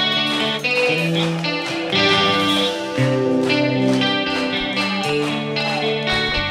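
Live rock band's song intro led by electric guitar, playing held notes and chords that change every second or so, before the vocals come in.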